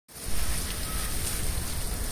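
Steady hiss of spraying water over a low rumble, starting as the recording begins.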